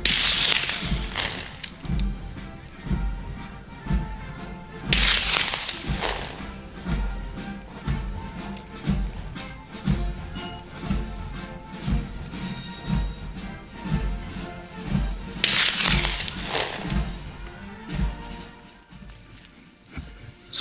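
Three shots from a Martini-Henry .577/450 black-powder rifle, one at the start, one about five seconds in and one about fifteen seconds in, each with a ringing tail. Background music with a steady low drum beat plays throughout.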